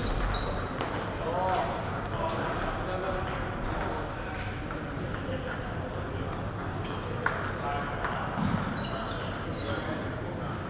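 Table tennis balls clicking now and then across a large hall, with one sharp click about seven seconds in, and voices talking in the background.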